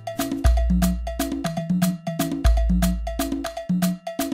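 Background music with a fast, even percussion pattern of sharp, cowbell-like strikes, about five a second, over deep bass notes that come in about every two seconds.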